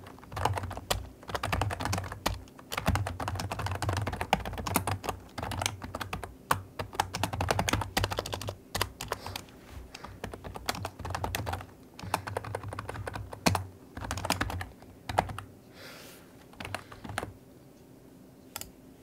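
Keystrokes on a Logitech K120 membrane computer keyboard, typed in quick runs with short pauses and sparser toward the end.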